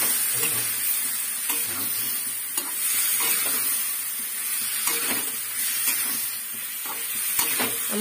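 Pumpkin cubes sizzling in oil in a metal kadai while a metal spatula stirs them, scraping and knocking against the pan at irregular moments.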